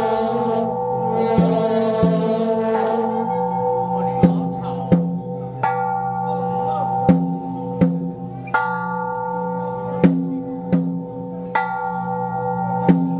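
Temple-procession percussion of gongs and cymbals: metal strikes ringing on at several pitches, falling into groups of three strokes that repeat every few seconds, with cymbals clashing over the first few seconds.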